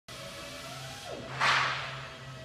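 Steady low hum of a large boat-factory hall, with a short, loud rush of noise about one and a half seconds in that fades away quickly.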